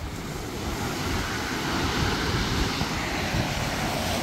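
Sea surf breaking and washing ashore, with wind rumbling steadily on the microphone.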